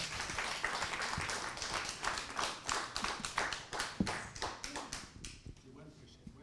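Audience applauding, the claps thinning out and dying away about five seconds in.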